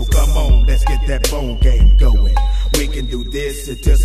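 Hip hop track: rapped vocals over a beat with a heavy, deep bass line and sharp drum hits.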